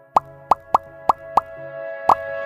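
Five quick cartoon 'pop' sound effects in a row, about three a second, over soft background music holding a steady chord.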